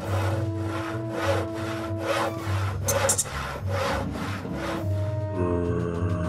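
Handsaw sawing through wood in steady back-and-forth strokes, about two and a half a second, over background music with a bass beat; the strokes stop near the end as a falling run of tones comes in.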